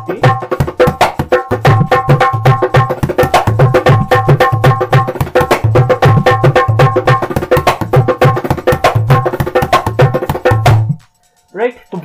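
Dholak played in a continuous rhythmic pattern: low strokes on the bass head mixed with quick, ringing strokes on the treble head. The playing stops suddenly about eleven seconds in.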